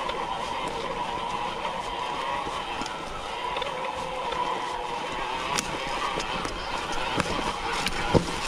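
Mountain bike rolling down a rocky forest trail: a steady, wavering buzz from the bike as it coasts, over rolling noise, with scattered sharp clicks and knocks from the chain and wheels hitting rocks.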